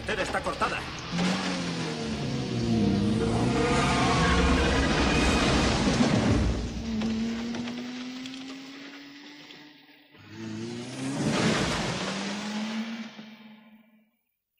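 Film soundtrack of vehicle engine noise mixed with score music, with pitches gliding up and down. It dips about ten seconds in, swells again, and then cuts off abruptly at the end.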